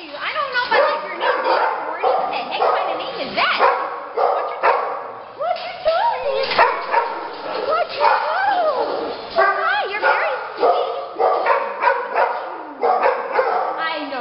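A dog whining, yipping and barking over and over, its high whimpers rising and falling in pitch between short sharp barks; an eager bid for attention.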